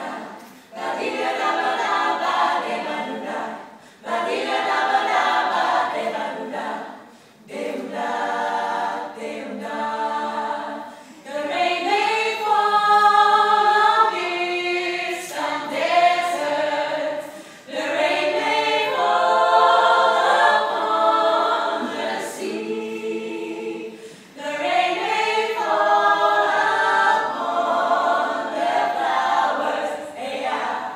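Mixed a cappella vocal group, seven women and one man, singing a bossa nova number without accompaniment, in phrases separated by brief pauses for breath.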